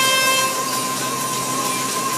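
Steady electronic horn tone played over a hall PA, the signal for the start of a robotics match, held on one pitch over the background noise of the hall.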